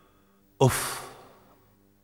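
A man's exasperated sigh, 'uff': one breathy exhale about half a second in, fading away over about a second.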